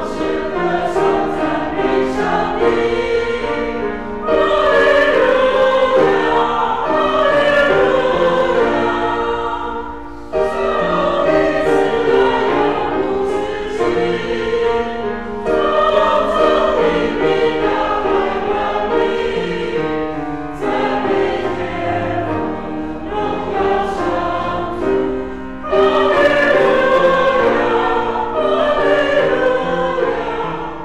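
A church congregation singing a hymn together in Mandarin, phrase by phrase, with short breaks between lines.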